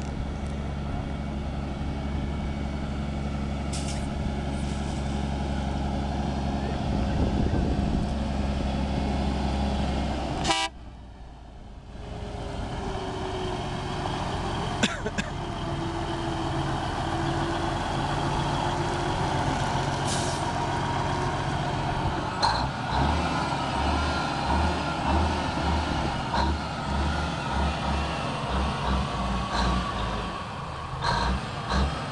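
Diesel engine of a tandem-axle water truck running as it drives along a gravel road, with water spraying from its front spray bar onto the road. The sound breaks off suddenly about ten seconds in, then builds again, with the engine's low pulsing turning uneven near the end.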